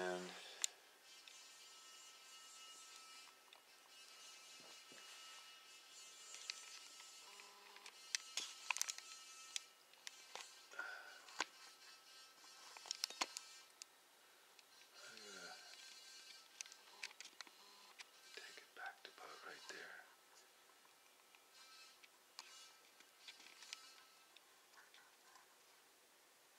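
Faint steady high-pitched electrical whine from a homemade magnetic motor's drive coils and switching circuit as it is started at low voltage (20 volts), with scattered sharp clicks.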